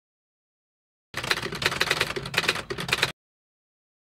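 Typewriter keys clacking in a rapid, uneven run. It starts about a second in and cuts off abruptly two seconds later.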